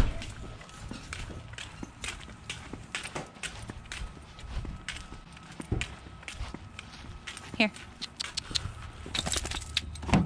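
Irregular clicking of two dogs' claws and a person's footsteps on a concrete driveway as they walk on leashes.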